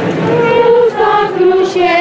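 Choir singing slow, held notes that step down in pitch.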